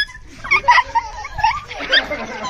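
Short, high-pitched squeals and yelps in quick, irregular bursts, mixed with excited voices, from people dodging a blindfolded player in a chasing game.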